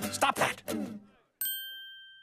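A brief voice, then about one and a half seconds in a single bright chime ding that rings on with a steady high tone and slowly fades.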